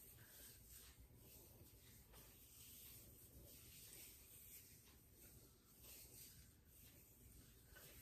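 Near silence, with faint soft rustling of fingers raking styling product through damp curly hair, coming and going.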